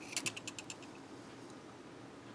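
A handheld battery-powered oscilloscope being handled: a quick run of light plastic clicks in the first half second or so.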